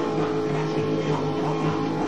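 Punk rock band playing live, guitar to the fore, in a steady, full mix.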